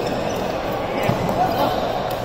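Badminton rally in a large indoor hall: a racket striking the shuttlecock and players' footsteps on the court, with a short impact about halfway through, over a steady background of voices from the other courts.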